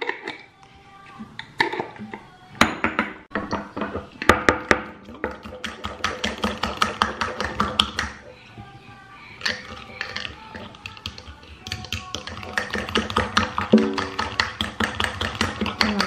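A metal utensil beating egg-and-tapioca pancake batter in a glass cup, clinking against the glass in rapid runs of strokes.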